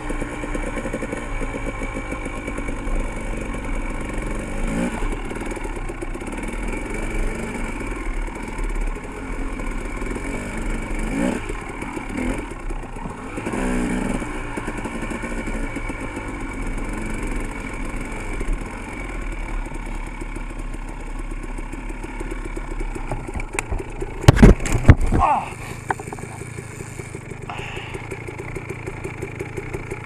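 Dirt bike engine running at low speed, its pitch rising and falling with the throttle. About 24 seconds in come a few loud knocks, after which the engine settles to a steady idle.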